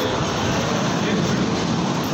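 Steady engine running noise, even and unbroken.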